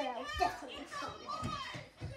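Children's voices: kids talking and playing, the words unclear.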